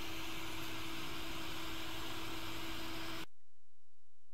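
JBC hot air rework gun blowing steadily, an even rushing hiss with a low steady hum, while reflowing the solder pads for an ASIC chip; the airflow noise cuts off abruptly near the end.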